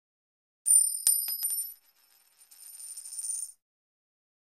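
A high, bright metallic ringing sound effect: a few quick strikes start a little over half a second in and ring on. A shimmering swell then builds up and cuts off sharply about three and a half seconds in.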